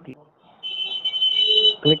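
A steady high-pitched electronic tone over telephone-call audio, starting about half a second in and lasting about a second, before the agent's voice resumes.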